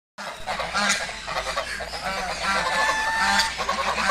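Domestic goose honking, a run of loud, harsh honks with one longer, steadier call about three-quarters of the way through.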